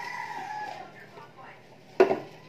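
A rooster crowing once, a call of under a second that drifts down in pitch toward its end. A sharp knock comes right at the end.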